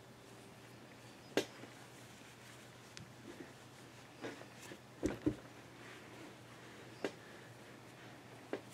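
Faint handling sounds of hands working a crocheted yarn strap through the stitches of a crocheted piece on a tabletop: a scattering of soft knocks and rustles, the loudest pair about five seconds in, over a low steady hum.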